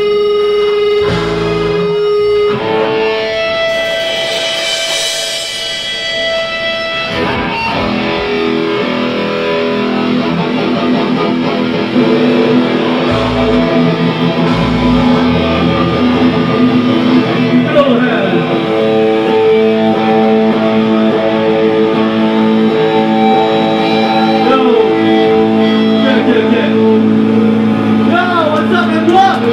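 Live hardcore punk band playing through amplifiers: electric guitars and bass holding long, ringing chords of the set's intro, the sound filling out and getting louder about twelve seconds in.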